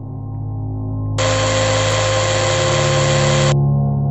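A steady mechanical whirring, like a motor driving a machine arm down from the ceiling, starts about a second in and cuts off sharply near the end. It plays over a low, droning music bed.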